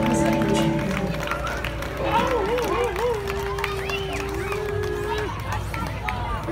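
A live band's last held chord ringing out and stopping about a second in, followed by crowd voices, with one long wavering vocal call in the middle.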